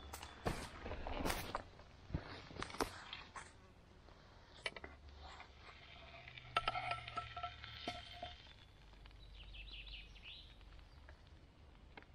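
Scattered light clicks and knocks of a spatula against a frying pan as a cooked burger patty is lifted out, mostly in the first few seconds. A few faint bird calls come through later.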